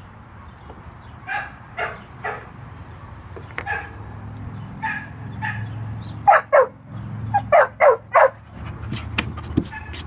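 A dog barking in short, sharp barks, about fifteen in all: scattered at first, then louder in quick runs of two to four in the second half.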